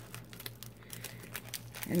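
Plastic poly mailer bag crinkling softly as it is handled, a scatter of faint light crackles.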